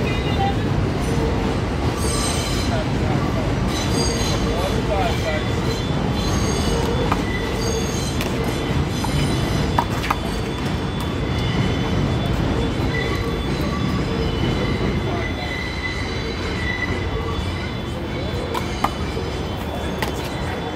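Elevated subway train passing: a steady rumble with wheels squealing on the rails, the squeals coming and going. A few sharp handball hits sound over it, around the middle and near the end.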